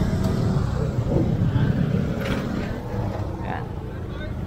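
Street traffic: a motor vehicle engine running close by, its low hum fading over the few seconds, with faint voices in the background.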